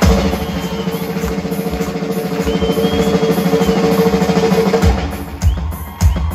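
Drum Limousine drum kit in a live drum solo: a fast, sustained drum roll that swells and then fades about five seconds in, with a single bass-drum hit near the end.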